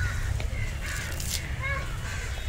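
Faint bird calls over a steady low rumble.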